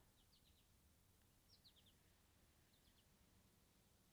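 Near silence with faint bird chirps: three brief runs of quick high notes, about a second and a half apart.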